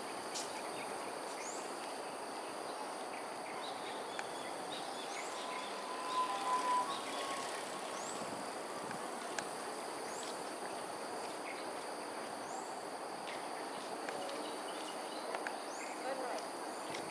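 Outdoor ambience of a steady, high-pitched insect drone, with short rising chirps every second or two. A brief whistled bird call comes about six seconds in and is the loudest sound.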